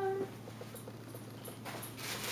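A few faint ticks and rustles as a cardboard box lid is lifted off, then crinkling of aluminium-foil wrapping starting about a second and a half in.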